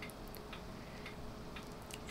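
Faint room tone: a few soft, irregular ticks over a faint steady hum.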